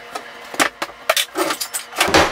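Kitchen handling clatter: a run of sharp knocks and rattles, thickest in the second half, as a plastic food canister is handled and set on the counter and a wooden cabinet door is shut.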